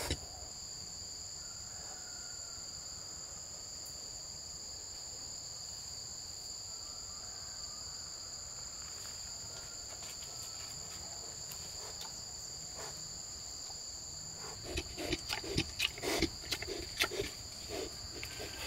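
Forest insects droning steadily in two even, high tones. In the last few seconds comes a string of irregular rustles and knocks as leafy vines are handled at the bamboo pig pen.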